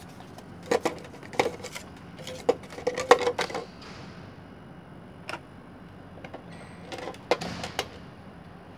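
Hard plastic toy parts knocking and clicking together as a toy rocket is handled and fitted into the round launch tower of a plastic playset. There is a quick run of sharp knocks in the first few seconds, a single click about halfway, and another short cluster near the end.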